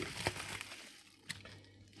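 Bubble wrap and a plastic zip bag crinkling faintly as they are handled and unwrapped, with a few small clicks, the loudest a little past halfway; it dies away toward the end.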